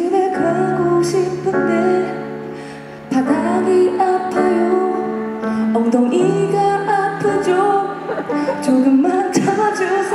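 A woman singing a wordless, improvised melody over sustained keyboard chords that change every few seconds.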